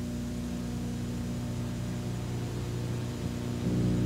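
Steady low electrical hum with a faint hiss from an old analogue TV tape recording, with no other sound over it. The level rises slightly near the end as the next segment begins.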